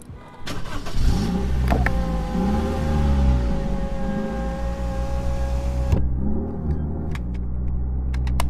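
Sampled car engine revving in a hip-hop beat: rising-and-falling swells over a low rumble, with steady held synth tones above. It cuts off suddenly about six seconds in, and the low swells then return.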